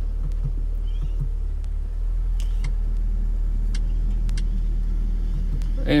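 Steady low rumble inside the cabin of a Mercedes-AMG CLA 45, its 2.0-litre turbocharged inline-four idling, with a few faint clicks from the controls being worked.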